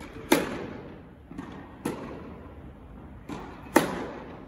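Tennis racket striking the ball on a serve, twice, about three and a half seconds apart, each crack followed by the echo of an indoor tennis hall. Fainter knocks of the ball landing come between them.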